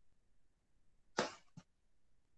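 Quiet room tone, broken about a second in by one short, breathy puff close to the microphone, followed by a small click.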